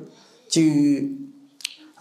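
A man's voice saying one drawn-out syllable about half a second in, after a short pause in his speech, then a single short sharp click near the end.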